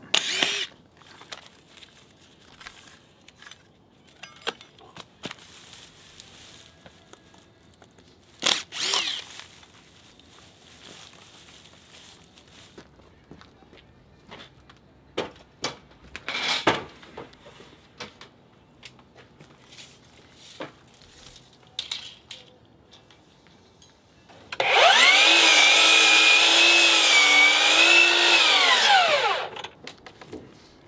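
Scattered knocks from timber being handled. Near the end, a compound miter saw runs for about five seconds, cutting through a wooden deck beam: a steady motor whine that dips slightly under the cut and falls away as the blade winds down.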